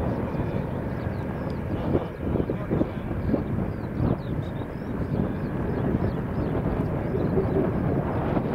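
Distant rumble of a twin-engine widebody jet airliner's engines at takeoff thrust as it rolls and lifts off, steady and uneven in the low end, with faint high chirps over it.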